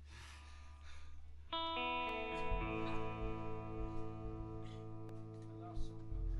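A live band starts a song. After a low amplifier hum, a held, wavering chord comes in about a second and a half in, built up note by note, on electric guitar with effects and organ-like sustain.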